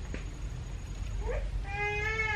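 A high animal call, heard twice: a short rising one a little past halfway, then a longer, steady one near the end.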